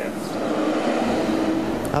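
Street traffic passing close by: a steady noise of engines and tyres, with a deeper rumble joining about halfway through as a heavier vehicle goes by.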